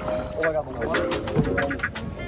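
People's voices, in short broken stretches.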